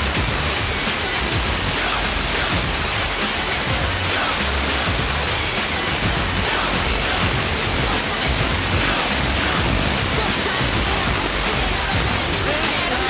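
Onkyo T-4711 FM tuner on 101.6 MHz receiving KMFM in mono at the very edge of reception: a steady, loud hiss of FM static with the station's music faintly audible beneath it. The hiss is the sign of a signal barely above the noise floor, which the receiver shows as nil strength.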